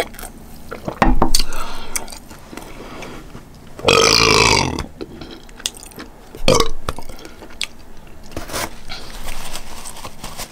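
A woman burping loudly several times into a close microphone after a drink: a short burp about a second in, the longest one near the middle lasting almost a second, and a shorter one soon after.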